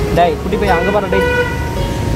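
A vehicle horn sounds once, a single steady toot held for just under a second, about a second in, over a man's voice and road traffic.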